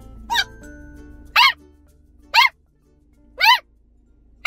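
Cream dachshund puppy giving short, high-pitched yips, four of them about a second apart, each rising and falling in pitch.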